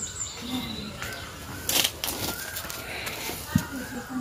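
A seedless orange being cut in half with a knife: a short wet, rustling slice a little before the middle, a weaker one after it, and a sharp knock near the end. Small birds chirp in the background.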